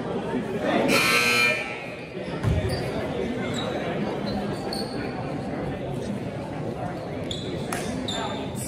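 Gymnasium scoreboard horn buzzing once, about a second in and for under a second, signalling the end of a timeout. Crowd chatter fills the hall, with a low thud of a basketball bounce soon after the horn.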